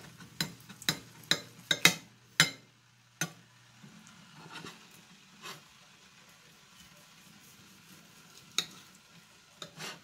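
Knife blade clicking and scraping on a ceramic plate while slicing boiled corned beef: a run of sharp clicks about half a second apart over the first three seconds, then sparse again with two more clicks near the end. A faint steady low hum runs underneath.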